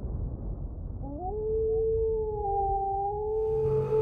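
A wolf howl sound effect: one long call that rises about a second in and then holds steady, over a low rumble.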